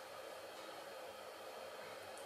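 Faint steady hiss of room tone and recording noise, with no distinct sound event.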